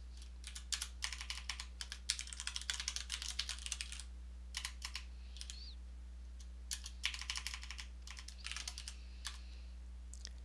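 Computer keyboard typing in several quick bursts of keystrokes with short pauses between them, over a faint steady low hum.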